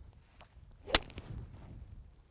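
A golf iron striking a teed-up golf ball: a single sharp, short click about a second in, just after a brief faint swish of the club.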